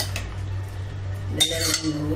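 A metal ladle clinking against aluminium cooking pots: a sharp clink at the start, then a louder ringing clank about a second and a half in, over a steady low hum.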